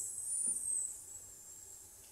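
A hall full of people hissing a long 'sss' together on one out-breath, as a breath-control exercise for singing. The hiss is loudest in the first second, then drops to a fainter, steady hiss.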